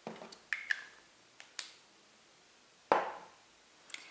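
Lips pressed together and parted after applying lipstick, making a few short, moist clicks in the first second and a half, then one louder, sharper smack just before three seconds.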